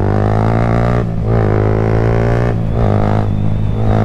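Yamaha motorcycle engine pulling hard under acceleration, its drone rising in pitch in three runs. Twice it breaks off briefly, about a second and two and a half seconds in, as at upshifts.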